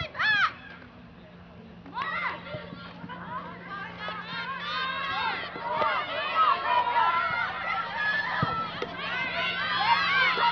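Many high children's voices shouting and yelling over one another on a playing field, a short call at the start, then a jumble of overlapping cries from about two seconds in that grows denser toward the end. A steady low hum runs underneath.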